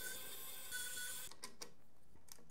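Faint clicks of a screwdriver working the screws of a motherboard's M.2 heat sink, a few in quick succession over low background hiss.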